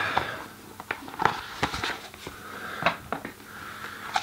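Hands handling a phone gimbal and its packaging: a scatter of irregular small clicks, taps and knocks with light rustling.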